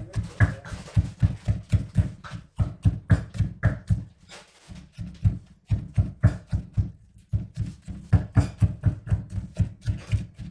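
Wooden pestle pounding wet chilli paste in a clay mortar: dull, even thuds about four a second, broken by a pause of over a second about four seconds in.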